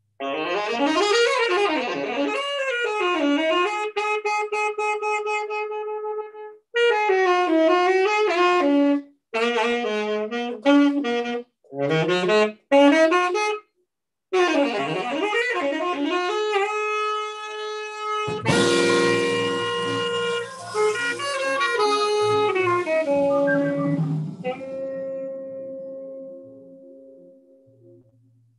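Saxophone playing an unaccompanied jazz solo of fast running lines, broken by several short pauses. About eighteen seconds in, the rest of the band comes in with flute for sustained held notes that fade away near the end.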